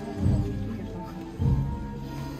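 Slow processional band music: held notes over a deep drum beat about once a second.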